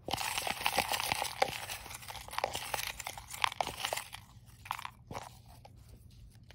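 Small folded paper slips rustling and clicking against the sides of a clear plastic tub as a hand stirs through them. This goes on densely for about four seconds, then thins to a few scattered crinkles as one slip is picked out.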